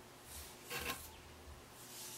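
Faint rubbing of fingertips on the skin of the back of a hand, blending in a liquid face primer, in a few short strokes.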